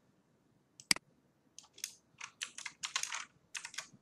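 Typing on a computer keyboard: a single click about a second in, then a quick run of keystrokes, as the text "G6P" is typed into a slide.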